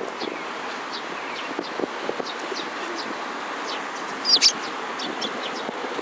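Eurasian tree sparrows chirping in short, sharp calls every half-second or so, with a louder double chirp a little past four seconds in, over a steady background noise.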